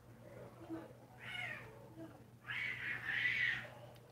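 A cat meowing: a short call about a second in, then a longer, louder call from about two and a half seconds, over a steady low hum.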